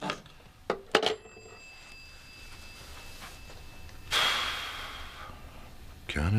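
Landline telephone receiver being put down on its cradle: a few sharp clunks and clicks in the first second, then a faint ringing from the phone that fades away. About four seconds in, a louder hissing burst with a ringing tone dies away over about a second.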